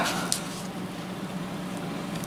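A brief rustle of a padded nylon holster being handled, followed by a steady low background hum.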